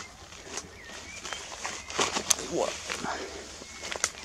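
Footsteps rustling through dense undergrowth and uprooted knotweed, with irregular sharp crackles of stems and twigs breaking underfoot. A short exclamation comes about halfway through.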